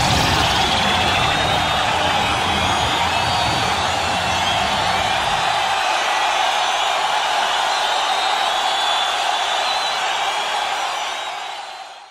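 Crowd noise with cheering and whoops. A low rumble underneath drops away about halfway through, and the sound fades out at the end.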